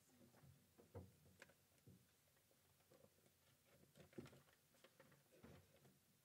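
Near silence: quiet room tone with a few faint, scattered taps and rustles.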